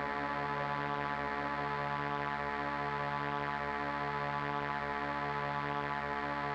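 A sustained electronic drone from the score: a dense chord of many held tones that stays steady and unchanging throughout, without rising or falling in pitch.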